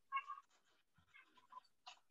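A few faint, short, high-pitched cries in the background, like a cat meowing.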